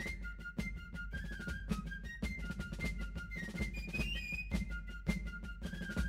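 Fife-and-drum music: a high fife melody over quick, sharp snare drum strokes.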